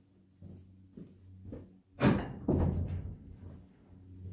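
Faint shuffling, then a sudden clatter about two seconds in, with a second close behind, dying away over about a second: a long forged-iron fire poker being picked up and handled as it is fetched.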